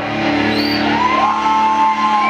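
Punk rock band playing live, with distorted electric guitar and bass. A long held note slides up about halfway through and holds.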